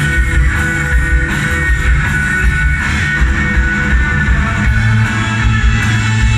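Live post-punk rock band playing an instrumental stretch, electric guitars to the fore over bass and drums, heard from out in the audience of a large hall.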